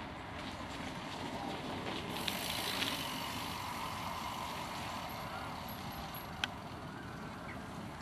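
Steady outdoor background rumble, swelling for a second or so about two seconds in, with a single sharp click past the six-second mark.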